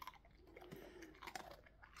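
A dog chewing a crunchy dog treat, faint, with a few sharp crunches.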